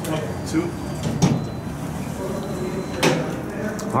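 Otis elevator doors sliding, with a clunk about a second in and another near the end, over a faint high whine.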